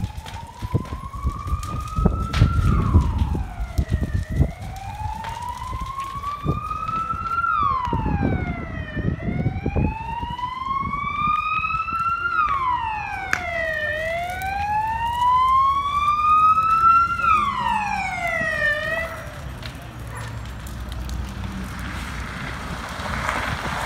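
Fire engine siren wailing, its pitch rising slowly and then dropping quickly about every five seconds, growing louder as it approaches, then cutting off a few seconds before the end. Irregular knocks and crackles run under it in the first half. A low engine rumble follows once the siren stops.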